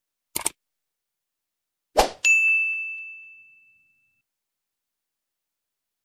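Sound effects of a subscribe-button animation. There is a quick double click, then about two seconds in a knock followed by a single notification-bell ding that rings out and fades over about a second and a half.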